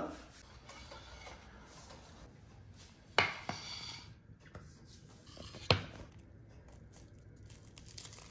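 Quiet kitchen handling: a paper towel rustling, and two sharp knocks about two and a half seconds apart as things are set down on a counter and a wooden cutting board.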